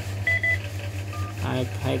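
Yaesu FT-2900 mobile transceiver's key beeps as its power setting is switched to High: two quick high beeps, then a single shorter, lower beep about a second in, over a steady low hum.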